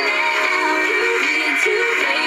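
A pop song with singing playing over a car's FM radio. It sounds thin, with little bass.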